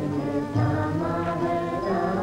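Background film music: sustained held notes with slow pitch glides, at a steady level.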